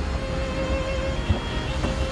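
Background music with a held, slightly wavering string note over a steady low rumble. The note breaks off a little past a second in and comes back near the end.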